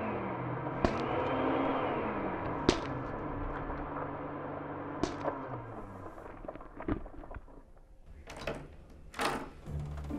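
Dark film-score drone with slow rising-and-falling tones and sharp hits every couple of seconds, thinning out after about six seconds; near the end, a door is opened.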